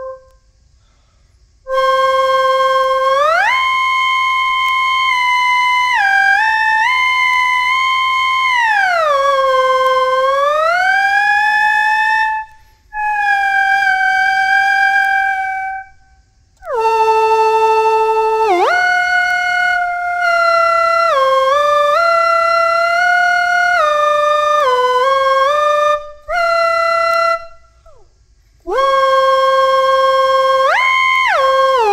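Electronic slide whistle (Teensy-based DSP flute model with whistle synthesis, played by breath through a mouthpiece and a motorized slider) playing a melody. Held notes slide smoothly up and down and step between pitches, with a few short breaks between phrases.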